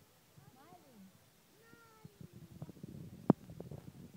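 Two drawn-out, meow-like calls: a short one that rises and falls, then a longer one that slowly falls in pitch. A single sharp click follows near the end, over low murmuring.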